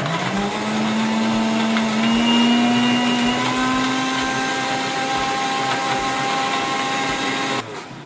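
Electric mixer grinder blending chocolate ice cream and milk into a milkshake. The motor whine rises quickly as it spins up, climbs a little more over the next few seconds, then holds steady until it is switched off near the end.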